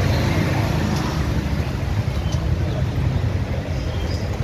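Motorcycle engine running steadily at low speed, a low pulsing rumble, with street traffic around it.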